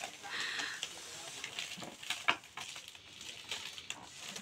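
Quiet crinkling and scattered small clicks of a foil party balloon being handled, with a brief high-pitched sound about half a second in.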